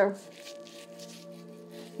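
Quiet background music of held, steady tones, with a faint soft rubbing of a damp paper towel being wiped across the face.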